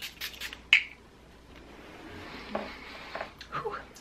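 Quick spritzes of a makeup setting spray misted onto the face, ending with one louder spray about a second in. A faint murmured voice follows near the end.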